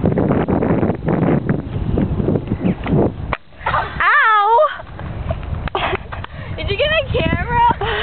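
A girl's high squeal that bends up and down in pitch, about four seconds in, and girls' laughing voices near the end, over a noisy, crackling background.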